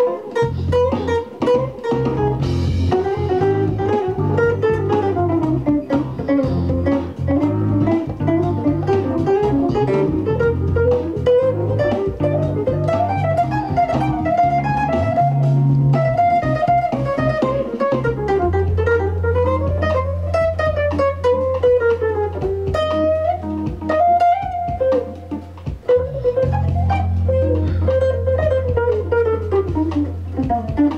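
Gretsch hollow-body electric guitar playing a fast improvised jazz solo, single-note lines running up and down the neck. Long held low bass notes sound underneath the whole time.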